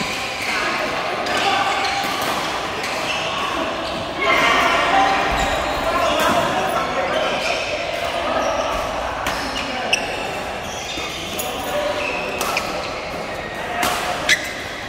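Badminton rally sounds in a large echoing hall: occasional sharp racket strikes on the shuttlecock, one about ten seconds in and more near the end, over the constant chatter and calls of players on the courts.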